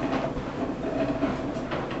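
A steady low hum, with a faint knock near the end.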